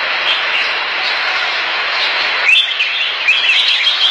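Caged red-whiskered bulbuls chirping over a dense, steady hiss. About two and a half seconds in, the hiss drops away and a run of short, quick chirps stands out clearly.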